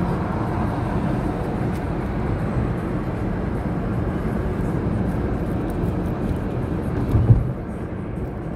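Steady engine and road noise heard inside the cabin of a moving car, with a brief thump about seven seconds in.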